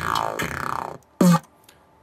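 Sampled bass sound taken from an old jungle record, played back raw in Kontakt: a noisy, gritty hit whose pitch falls over about a second, then a second short, louder hit with a low tone. It sounds a bit like a distorted 808 with percussion underneath.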